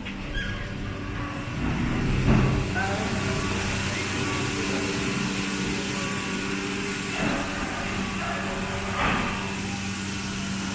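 Factory floor noise: a steady machine hum made of several low tones under a hiss of moving air, from the machinery and large fans of a guitar factory's metal shop. It grows louder about two seconds in, and faint voices sound over it.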